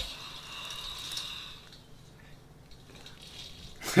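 Faint rustling and handling noises of food and utensils picked up close by a microphone in an ASMR eating clip, then laughter right at the end.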